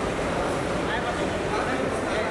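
Crowd ambience: indistinct men's voices and chatter over a steady background rush of noise, with no clear words.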